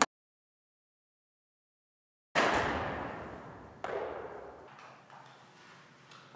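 Iron club striking a golf ball off a hitting mat: a single sharp click right at the start, followed by about two seconds of dead silence. Then two sudden noisy sounds that each fade out over a second or so, the first about two and a half seconds in and the second about a second and a half later.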